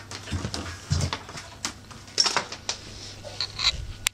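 Doberman puppy scuffling on a bed: sheets rustling, paws scratching and a few soft thumps at irregular moments.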